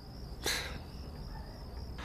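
Night-time cricket chirping ambience: a steady, high, thin trill throughout, with a brief soft noise about half a second in.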